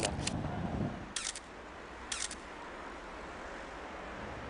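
SLR camera shutter firing in short mechanical clicks, once about a second in and again about two seconds in, over faint steady background noise.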